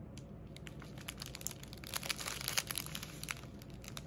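Clear plastic packaging of a diamond painting kit's drill bags crinkling as it is handled and turned over in the hands, a run of small crackles that is busiest about halfway through.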